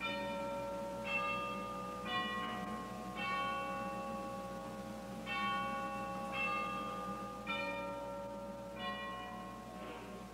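Bells ringing a slow run of notes, about one strike a second, each note ringing on into the next.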